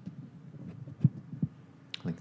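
Handheld microphone being picked up and handled: a few soft low thumps, the strongest about a second in.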